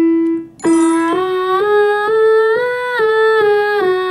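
A young woman's voice warming up before singing, holding steady notes of about half a second each that step up a five-note scale and back down.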